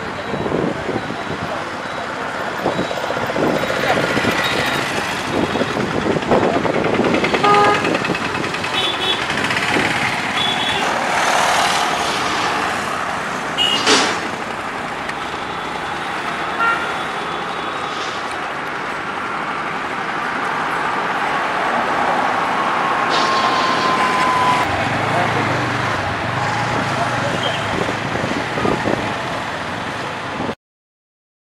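Street traffic: motor vehicles running and passing steadily, with short horn toots now and then.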